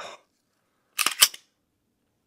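Pistol action clicking: three or four sharp metallic clicks in quick succession about a second in, as the trigger reset of the freshly lubricated handgun is checked.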